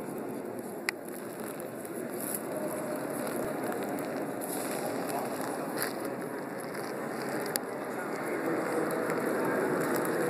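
Steady murmur of a large crowd of people talking at once, no single voice standing out, growing slightly louder toward the end. A few brief clicks from the phone being handled.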